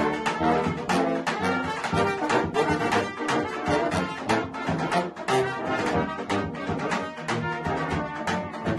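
Balkan brass band playing a lively tune: trumpets and baritone horns carry the melody over a sousaphone bass line, with a large bass drum beating a steady rhythm.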